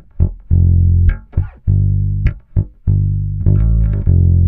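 Electric bass guitar played fingerstyle: a line of low, held notes with short notes and small string clicks between them.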